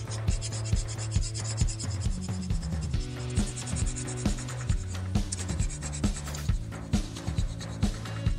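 Coloured pencil shading on paper: a dry, scratchy rubbing of the lead going back and forth, heard over background music with a steady beat.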